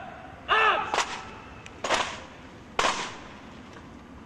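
Guardsmen's parade drill: a short shouted word of command, then three sharp cracks about a second apart as the rank performs drill movements in unison.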